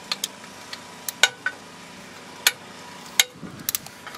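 Ratchet and socket clicking and clinking against metal while loosening the oil filter cover nuts on a Suzuki GS500 engine. Several sharp, separate clicks come at irregular intervals, with a small cluster near the end.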